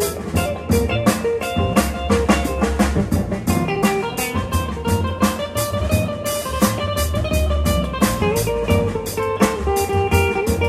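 Live instrumental band: a Telecaster electric guitar playing melodic lines with held notes over a drum kit keeping a busy beat with cymbals and an upright bass underneath.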